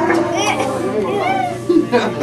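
Children's high-pitched voices talking and exclaiming over one another.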